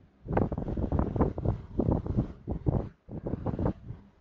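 A spoon stirring and scraping thick onion-tomato masala in a steel pan close to the microphone. It comes as rough, irregular scraping and knocking in two bursts, with a short break about three seconds in.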